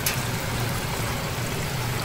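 Water jets pouring steadily from a spray pipe into a live-lobster tank, splashing into the water, over a low steady hum.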